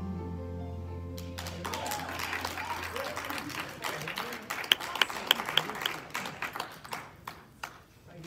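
The held final chord of a song's accompaniment music fades out while a small church congregation breaks into applause. The clapping starts about a second and a half in, peaks with a few sharp single claps in the middle, and thins out near the end.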